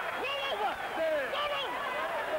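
Indistinct men's voices with no clear words, going on without a pause.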